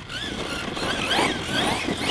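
Team Magic Seth electric desert buggy running on a 6S battery: its motor whine rises and falls again and again with throttle changes, over drivetrain and tyre noise on grass.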